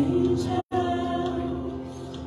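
Worship song sung by a man and a woman on handheld microphones, holding long notes. The sound cuts out completely for an instant a little over half a second in.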